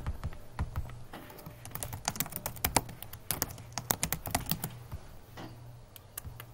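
Typing on a computer keyboard: a quick, irregular run of key clicks lasting about four and a half seconds, then a few single clicks near the end, over a faint steady low hum.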